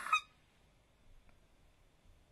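The tail of a spoken word, then near silence: faint room tone with one soft click a little past the middle.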